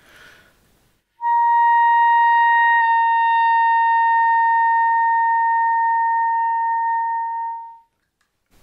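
A B-flat clarinet holds a single high C in the clarion register for about six seconds, starting a second in after a short breath. A couple of seconds into the note the register key is let go, and the note sags slightly flat but keeps sounding. It then fades away near the end.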